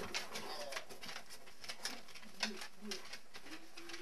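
Irregular sharp clicks of large husky-type dogs' claws on a wooden floor as they move about. Near the end come a few short, soft, low hooting grumbles from one of the dogs.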